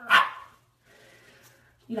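A woman imitating a dog with one loud, short bark right at the start, mocking a cheating partner as a dog.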